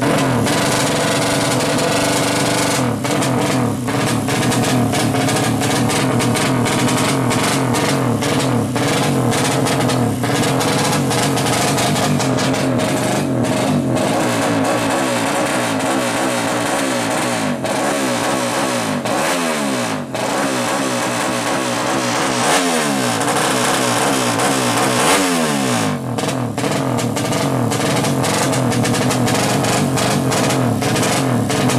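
A modified 200cc drag-race motorcycle engine revving hard while the bike is held stationary on a dynamometer. It runs at high revs throughout, with its pitch repeatedly falling and rising again in the second half.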